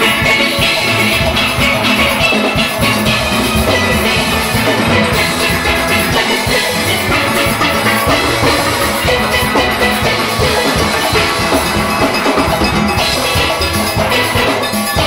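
A full steel orchestra playing: many steel pans sounding together at a steady loud level, driven by a drum kit.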